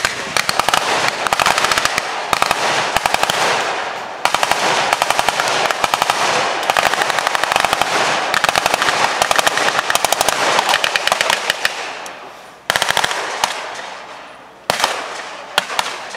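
Blank-firing automatic weapons in a battle re-enactment: long runs of rapid fire from several guns overlapping for about twelve seconds, then a few single shots spaced out.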